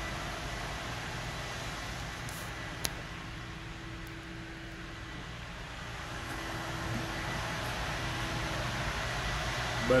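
Steady background noise of a large room with a faint hum, and one sharp click about three seconds in.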